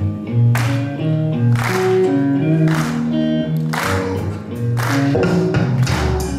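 Live blues-rock band playing electric guitar, bass guitar and drums: held notes over a steady beat, with a sharp drum hit about once a second.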